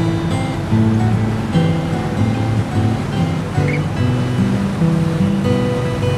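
Strummed acoustic guitar music, with a steady rush of sea water underneath.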